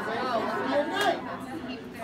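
Chatter of many adults talking in pairs at once, their voices overlapping.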